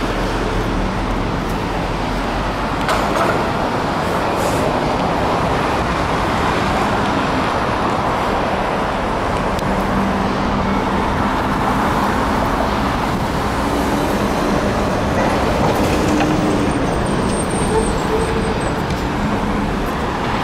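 Steady city road traffic: a continuous wash of passing cars and engines.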